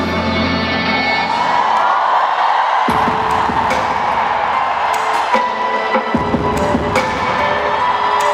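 Live music played loud over an arena sound system, with the crowd cheering. About three seconds in, a heavy bass line comes in sharply.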